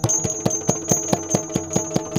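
Yakshagana chande drum beaten rapidly with two sticks in a steady, even run of strokes, with other percussion over a sustained drone.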